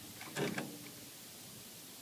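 A brief faint rustle or click of handling about half a second in, then quiet room tone.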